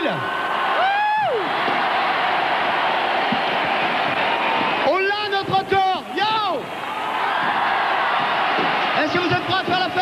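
Large arena crowd applauding and cheering. A man shouts over the microphone about a second in, and again between about five and six and a half seconds.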